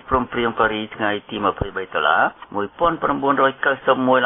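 Speech only: a man narrating news in Khmer, talking without a break.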